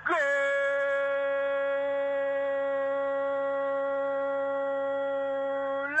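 Radio football commentator's drawn-out goal cry, calling a goal: one vowel held at a steady pitch for about six seconds, sliding in at the start and lifting slightly near the end.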